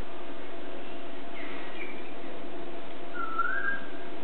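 A bird calling in short whistles: one brief call about one and a half seconds in, and a slightly rising whistle near the end, over a steady low hum.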